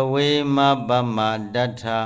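A Buddhist monk's voice chanting a recitation on a nearly level pitch, the syllables drawn out and run together.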